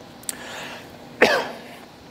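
A man's single short cough a little over a second in, preceded by a faint click.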